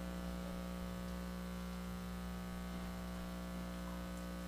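Steady electrical mains hum: a low buzz with many even overtones that holds unchanged throughout.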